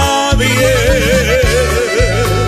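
Norteño band music: a held melody note wavers widely and evenly over a steady, repeating bass beat.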